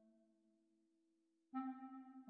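Sampled clarinet (NotePerformer software playback) playing soft, short low notes: a note dies away early on, a faint steady tone hangs on beneath, and about one and a half seconds in a new, slightly higher note begins.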